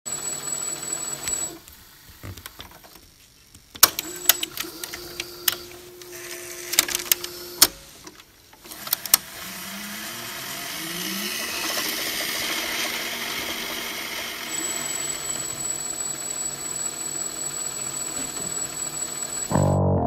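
VCR sound effects: a thin high whine over noise as the tape rewinds, then a run of sharp mechanical clicks and clunks from the deck's buttons and tape transport, followed by a slowly building hiss of tape noise with brief rising pitch glides. A bass guitar riff comes in just before the end.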